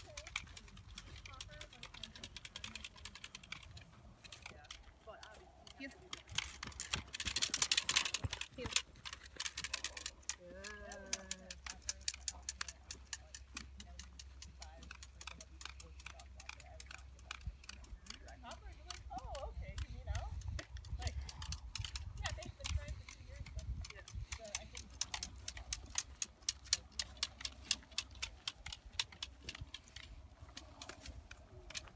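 Footsteps crunching and rustling through dry grass as several people and a dog walk, with a louder rustle about eight seconds in and a short voice call about eleven seconds in.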